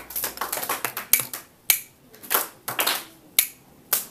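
About five sharp snaps at uneven intervals, with short bursts of hissing between them.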